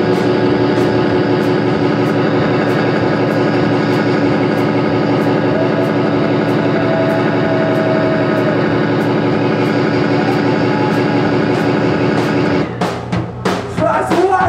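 Live rock band: electric guitar and drum kit playing loud and dense, with cymbal strikes about twice a second. Near the end the full sound breaks off into a few separate drum hits.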